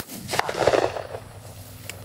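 A shotgun shot about half a second in, its report rolling away over roughly half a second.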